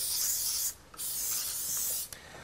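Cooking oil spray can hissing in two bursts onto fish fillets, the first stopping about two-thirds of a second in and the second starting about a second in.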